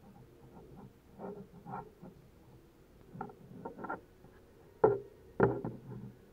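Handling of a small plastic quadcopter drone: light clicks and scrapes as a part is worked onto a motor arm, then two louder knocks near the end as the drone is set down on a hard tabletop.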